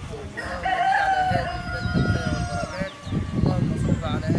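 A rooster crowing once, a long call of about two seconds that holds nearly level in pitch and tails off slightly at the end.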